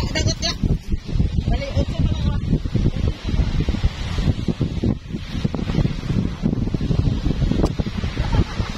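Wind buffeting the microphone in a loud, fluttering low rumble, with faint voices and surf behind it.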